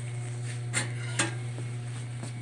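Steady low electrical hum, with two light knocks, one a little under a second in and another just after a second.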